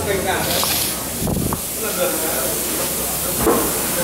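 People's voices and a laugh in a workshop, with a short burst of hiss about half a second in.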